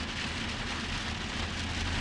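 Rain and wet-road noise heard inside a moving Chevrolet 2500 pickup's cab: a steady hiss over a low rumble, growing a little louder near the end.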